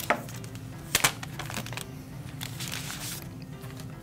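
Apple wireless keyboard and mouse being handled and set down on a desk: a few sharp light knocks, two close together about a second in, with rustling of packaging in between. Soft background music underneath.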